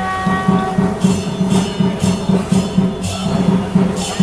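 Temple procession percussion band playing: quick drum beats with cymbal crashes about every half second to a second. A held pitched note sounds over it and stops about a second in.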